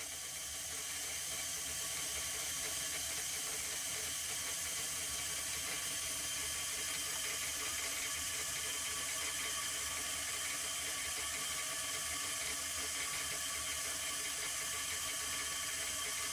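Steady, even rush of tap water running through a water-jet vacuum pump and the condenser's cooling line while the vacuum distillation runs.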